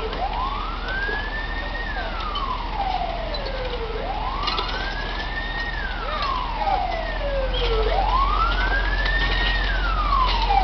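Fire engine siren wailing in a slow cycle that repeats about every four seconds: a quick rise, a brief hold at the top, then a long fall. A low engine rumble runs underneath and grows louder near the end.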